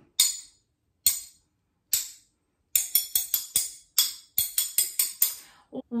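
A metal fork and spoon clinked together: three evenly spaced clinks keeping the beat, then, a little before halfway, a quicker run of about a dozen clinks playing the rhythm of the words of a chanted rhyme.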